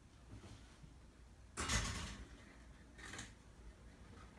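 A cat's claws and paws scraping and rustling on the cloth-covered back of a futon as it climbs and walks along it: a louder scuffle just before the middle and a shorter, fainter one about three seconds in.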